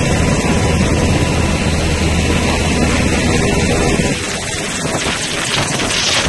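UH-60 Black Hawk helicopter running on the ground close by, its turbines and turning rotor making a loud, steady noise with a low hum. About four seconds in, the low hum fades and gusty rotor wash buffeting the microphone takes over.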